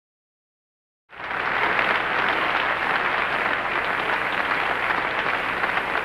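Concert audience applauding: the sound cuts in abruptly about a second in, then the clapping stays steady and full.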